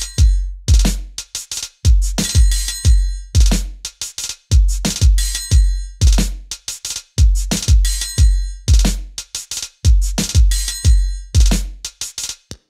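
Logic Pro Drum Machine Designer 'Boom Bap' kit playing a one-bar step-sequenced drum loop at 90 BPM: deep kick hits, crisp percussion and shaker, with a triangle struck near the end of each bar.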